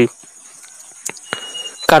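Faint, steady, high-pitched chirring of insects in the background, with a few faint clicks. Speech ends at the very start and resumes near the end.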